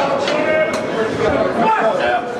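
Several people talking at once in a large, echoing hall, with one sharp click a little under a second in.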